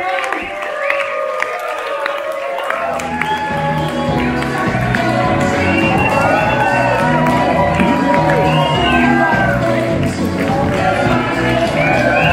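Concert audience cheering and whooping, many high calls gliding up and down. About three seconds in, music with a steady bass beat comes in under the cheering.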